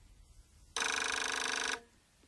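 A telephone rings once, a single ring about a second long with a fast flutter, starting a little before the middle.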